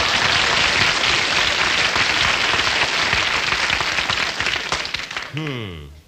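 Studio audience applauding, dying away near the end. Just before it ends, a voice slides down in pitch.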